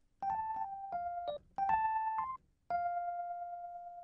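Rhodes electric piano sound playing a basic single-note melody line: two short runs of quick notes with a brief gap between them, then one long held note near the end.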